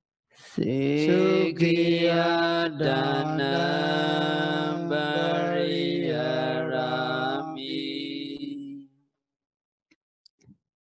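A Buddhist monk chanting into a microphone: one low male voice holding long, steady notes with short breaks between phrases, stopping about nine seconds in.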